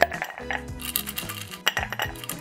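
Large ice cubes dropped into a tall drinking glass, clinking sharply against the glass several times, with background music playing.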